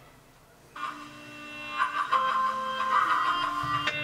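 Music played from an MP3 file by a budget HD MP5 car stereo through its speaker. It starts about a second in and grows louder about halfway through.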